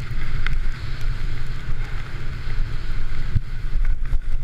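Wind buffeting an action camera's microphone as a Yeti SB66 mountain bike descends fast on a slippery, muddy forest trail: a steady low rumble over the hiss of tyres and the rattle of the bike. Two sharp knocks, about half a second in and near the end, as the bike hits bumps.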